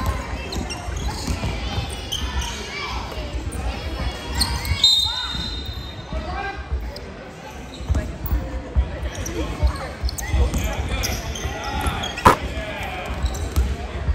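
A basketball dribbled on a wooden sports-hall court, with repeated bounces and players' and spectators' voices echoing in the large hall. A short high tone sounds about five seconds in, and a single sharp slap comes a couple of seconds before the end.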